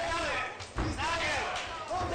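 Voices talking, with one heavy thud about a second in, from the action in an MMA cage.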